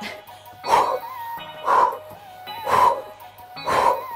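A woman's short, forceful exhales, four of them about a second apart, breathing out in rhythm with mountain climbers, over background music.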